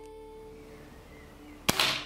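A single shot from a scoped break-barrel air rifle about 1.7 s in: one sharp crack with a brief hissing tail. It is a miss, so no balloon pops, over soft background music.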